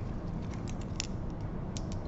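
A few small clicks and taps as an amber glass dropper bottle is handled and its dropper cap unscrewed and drawn out, the sharpest click about a second in, over a steady low hum.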